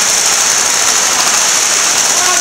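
Steady, even hiss with no distinct events, strongest in the high range. It is the same background noise that runs under the speech on either side.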